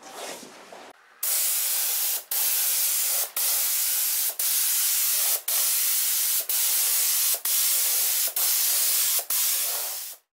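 Compressed-air gravity-feed spray gun laying on a coat of red base coat: a steady hiss of air and atomised paint starting about a second in, broken by brief dips about once a second as each pass ends and the trigger is let off.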